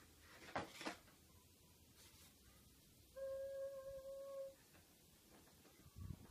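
Rigid cardboard headphone box being opened: two brief scraping rustles about half a second in as the lid is lifted off. Around the middle a steady hummed-sounding tone holds for about a second and a half.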